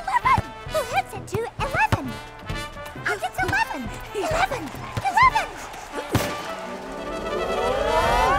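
Cartoon sound of a football match: many short, squeaky, chirping calls from little ball-shaped characters, with light thuds, then a sharp thump a little after six seconds. Near the end a crowd cheer swells up as the ball goes into the goal.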